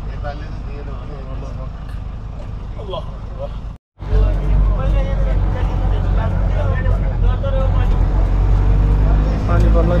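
Bus engine and road rumble heard from inside the cabin, with voices chattering over it. The sound cuts out for an instant about four seconds in and comes back with a heavier rumble.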